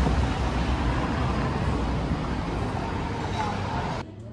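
Street ambience: traffic rumble mixed with the voices of passers-by, fading slightly over the few seconds.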